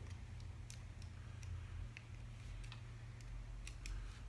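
Faint, irregular clicks and ticks of a paintball marker's lower receiver and trigger frame being handled and worked apart, over a low steady hum.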